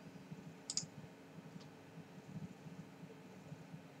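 Quiet room tone with a faint steady hum, broken by one sharp small click about a second in and a fainter click shortly after.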